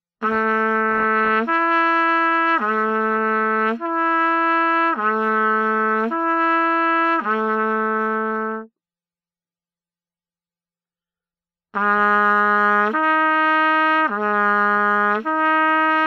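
Trumpet playing a slow lip slur: on open valves it swings smoothly between written C and the G above, each note held about a second, seven notes in all, changing pitch with the lips alone and no valve movement. After a pause of about three seconds it starts again a step lower on second valve, near the end.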